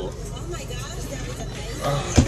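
Steady low rumble of a car, heard inside the cabin.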